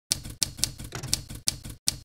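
Typewriter keystrokes: about seven sharp clacks in quick, slightly uneven succession, one for each letter typed.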